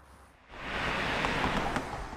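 A car passing close by: tyre and road noise that comes in about half a second in and holds as a steady hiss.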